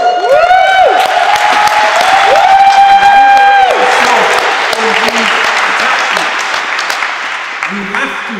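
Audience applauding, with two long shouted cheers rising over the clapping in the first four seconds; the applause dies down toward the end.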